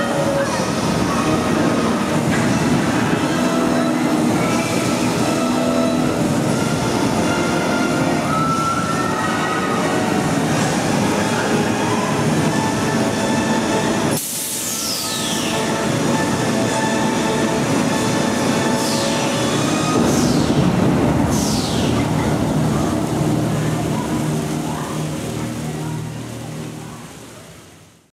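Huss Suspended Top Spin thrill ride running: a steady, dense din of ride machinery mixed with riders and park sound, changing abruptly about halfway through, with several high falling sweeps after that, then fading out near the end.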